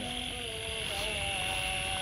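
Steady high-pitched drone of night insects, with a faint, slightly wavering hum of a distant engine underneath.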